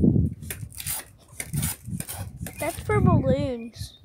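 A boy's voice, speaking indistinctly, ending about three seconds in with a wavering, drawn-out vocal sound.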